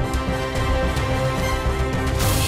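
News headlines theme music: held synth chords over a steady beat.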